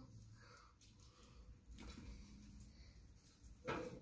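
Near silence: room tone, broken by one short, faint noise near the end.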